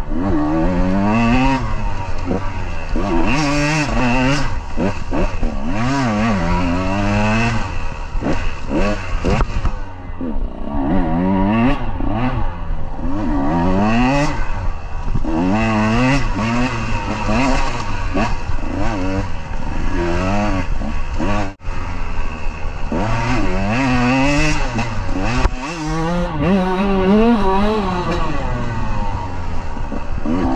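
KTM 150 two-stroke dirt bike engine being ridden hard, revving up and falling back over and over as the throttle is worked.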